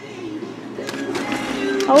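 Indistinct voices that grow louder as the room changes, with a few light clicks around the middle.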